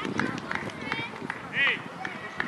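Voices of young footballers and onlookers calling out across an outdoor pitch, with one loud, high-pitched child's shout about one and a half seconds in.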